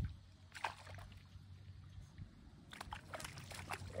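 A hooked fish splashing at the water's surface as it is played near the bank: one short splash about half a second in and a quicker run of splashes near the end, over a steady low rumble.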